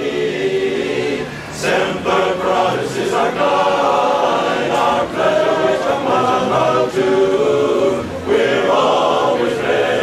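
Men's barbershop chorus singing a cappella in close four-part harmony, with sustained chords moving from one to the next.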